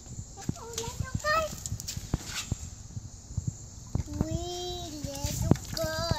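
A young child's voice: short high exclamations near the start, then a long drawn-out cooing "ooh" about four seconds in. Scattered small sharp knocks and taps sound throughout.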